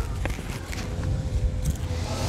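Low rumble on a handheld camera's microphone as it is carried along, with a few faint clicks and steps and a faint steady hum.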